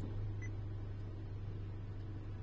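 A brief, faint beep from a Honda Gathers car navigation head unit's touchscreen, answering a button press about half a second in, over a steady low hum.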